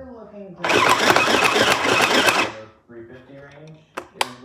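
Small plastic sewing machine running in one burst of about two seconds, a rapid run of ticks, starting just under a second in and stopping abruptly.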